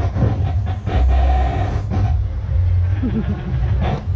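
A man's voice through a stage PA system, faint and partly lost under a heavy low rumble, with clearer speech near the end.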